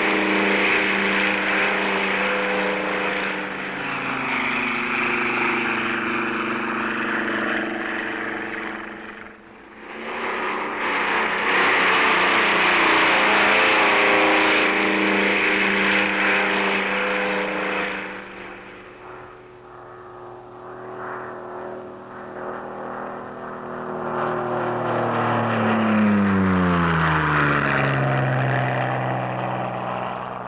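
Piston-engined propeller aircraft droning as they fly low and pass by. The sound swells and fades twice. Near the end one passes with its pitch falling steeply.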